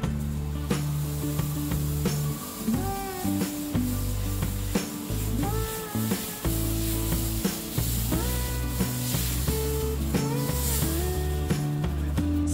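Dosa batter sizzling on a hot non-stick tawa as it is poured and spread outward in circles with the back of a steel ladle, the ladle rubbing over the batter. Background music with held bass notes and a gliding melody plays throughout.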